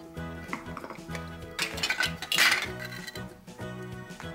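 Hard plastic toy fruit and vegetable pieces clattering against each other as a hand rummages among them in a basket. The clatter is loudest for about a second in the middle, over background music.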